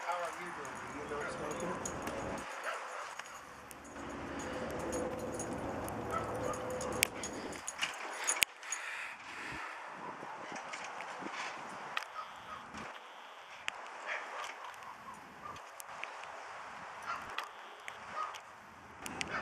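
A beagle giving short dog vocalizations, with scattered sharp taps and clicks, the loudest about halfway through.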